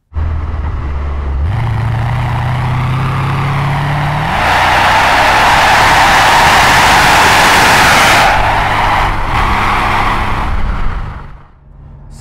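2002 Mercedes-Benz SL55 AMG's supercharged V8 running on the move, its pitch stepping up about one and a half seconds in. From about four to eight seconds a loud rush of wind and tyre noise covers it, then the sound fades away near the end.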